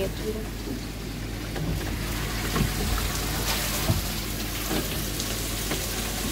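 Water running and splashing in a koi pond's sieve filter chamber as the sludge-laden sieve screen is lifted out, dripping, with a couple of light knocks from the screen being handled.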